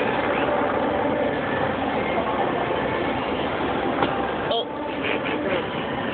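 Indistinct voices over a steady background of vehicle or engine noise, with a sharp click about four seconds in followed by a brief dip in level.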